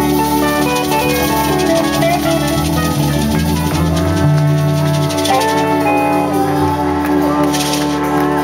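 Live band music with trumpet, trombone, keyboard, electric guitar and drum kit, mostly long held notes over a steady bass.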